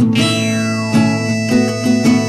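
Folk-rock band playing an instrumental passage led by guitar, with no singing.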